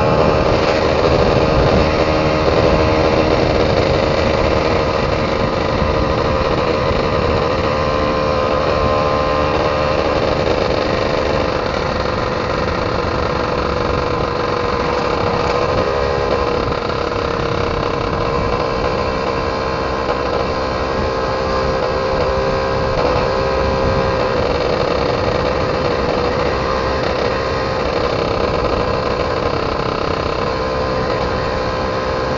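Yamaha F1ZR's single-cylinder two-stroke engine running steadily while the motorcycle is ridden along, heard from on the bike.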